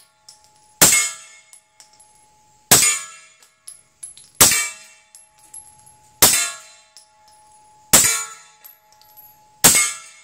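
Suppressed Kimber Custom TLE/RL II 9 mm 1911 pistol, fitted with a Griffin Revolution suppressor and firing 147-grain hand loads, fires six shots at an even pace, one every second and three-quarters or so, the last near the end. Each shot is followed by a metallic ring that lingers until the next one. The pistol cycles through the magazine without a malfunction.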